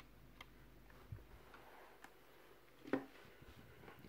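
A few faint clicks and taps as a laptop DDR3 RAM module is pressed down into its slot's retaining clips, the strongest one about three seconds in, over near-silent room tone.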